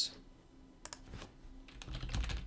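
A few separate light keystrokes on a computer keyboard as a word is typed.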